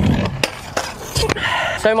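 Stunt scooter wheels rolling across a wooden deck, then a sharp clack about half a second in and a few more knocks and a brief scrape as the scooter meets the metal handrail.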